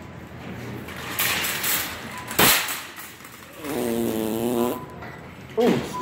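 A buzzy fart sound lasting about a second, a little past the middle. It is preceded by a sharp knock about two and a half seconds in, the loudest moment.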